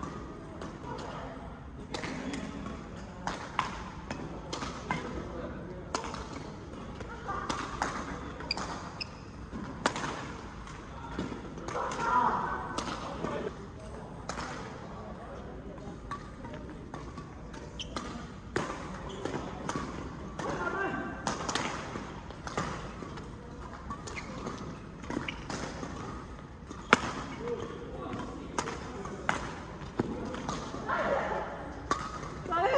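Badminton rackets striking a shuttlecock during doubles rallies: irregular sharp cracks, some spaced a second or so apart, over players' voices.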